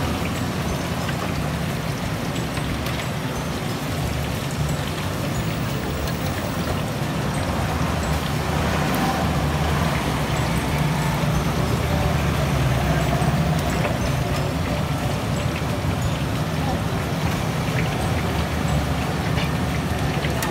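Stinky tofu deep-frying in a wok of hot oil: a steady sizzle over a constant low rumble.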